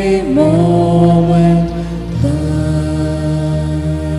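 Slow devotional chant-like singing in long held notes over sustained tones, moving to new notes about a quarter second in and again about two seconds in.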